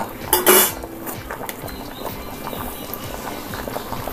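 A steel spoon clinks against a steel pot twice in the first second, then water in the pot bubbles steadily at a rolling boil.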